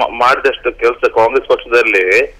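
Continuous speech from a phone-in caller heard over a telephone line, sounding narrow and thin.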